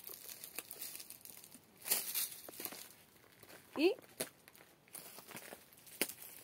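Footsteps crunching on dry leaves and gravel, with scattered crackles and a louder rustle about two seconds in.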